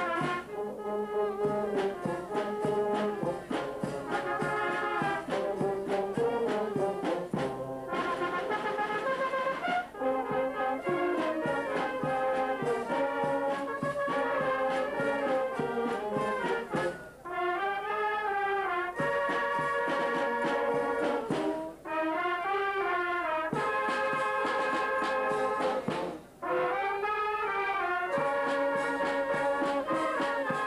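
Large wind band of brass and woodwinds (trumpets, horns, tubas, clarinets and saxophone) playing a melodic piece, with brief pauses between phrases.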